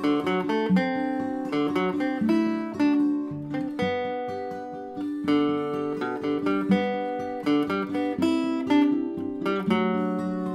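A waltz played on mandolin, guitar and tenor guitar: plucked melody notes over strummed guitar chords.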